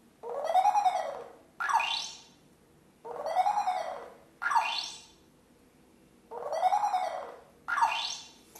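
Electronic sound effect from the LEGO WeDo 2.0 program, played through the laptop's speakers. It is triggered when the robot's motion sensor detects a hand. Each time there is a tone that rises and falls, then a quick upward swoop, and the pattern plays three times, about every three seconds.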